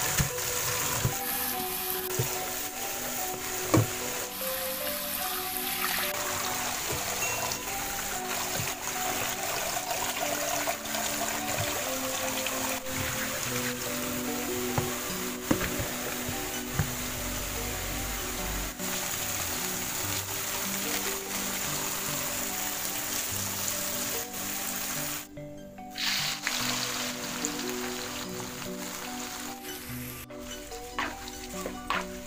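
Background music with a steady melody over tap water running into a bowl of grated cassava in a stainless steel sink, as the shreds are rinsed by hand.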